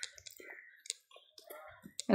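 A few faint, sharp clicks among quiet, indistinct voices.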